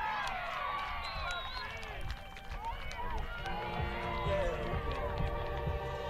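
Spectators and players cheering and shouting after a goal, many high voices rising and falling over one another, with steady held tones of music joining about halfway through.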